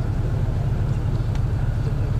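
Steady low rumble of outdoor background noise, with no clear events in it.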